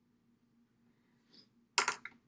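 A short, sharp clatter of a small hard object being set down or dropped near the end, preceded by a faint brief rustle; otherwise a quiet room.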